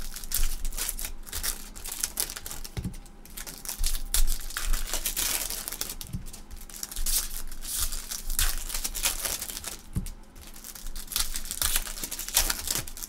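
Clear plastic trading-card pack wrappers being torn open and crinkled by hand, an irregular run of crackling rustles. A few soft knocks come in between.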